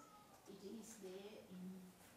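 Faint, hesitant speech in a woman's voice, well away from the microphone, with drawn-out vowels and pauses.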